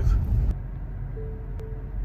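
Tesla parking-sensor chime: two short, even beeps about a second in, over a low cabin rumble, warning that the car is reversing close to an obstacle, here about 15 inches from a charger post.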